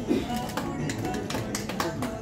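Music playing, with sharp clicks scattered irregularly through it, several close together in the second half.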